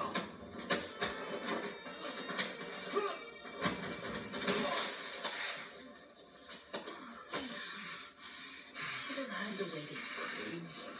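TV drama soundtrack playing: tense background music with a run of sharp hits and impacts, most dense about halfway through.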